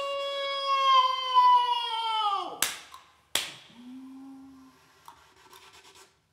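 Contemporary music for voice, recorder and electronics: a long held high tone that sinks slowly in pitch and then falls away after about two and a half seconds, followed by two sharp hissing attacks, a short low tone, and then near quiet.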